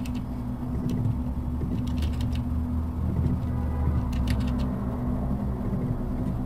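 A steady low hum, with a few faint clicks of computer keyboard typing scattered through it.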